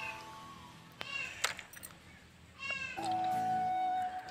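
A cat meowing twice, two short calls about a second and a half apart. Background music comes back in near the end.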